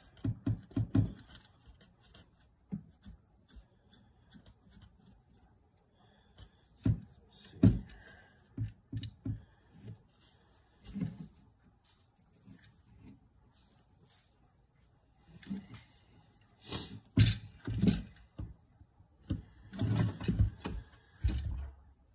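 Scattered clicks and knocks of a smartphone bow mount being handled and fitted onto a compound bow, coming in short clusters with quiet gaps between.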